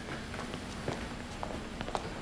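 Faint footsteps on a hard floor, a few light steps in the second half, over a steady low room hum.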